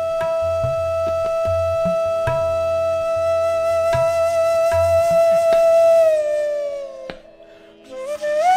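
Bansuri (bamboo flute) holding one long steady note for about six seconds, then gliding down and fading away near the end. It plays a slow vilambit gat in Raag Malkauns over a steady drone. Deep tabla strokes sound under the note for the first five seconds.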